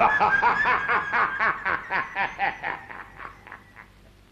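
A person laughing in a long run of even 'ha-ha' pulses, about five a second, dying away near the end.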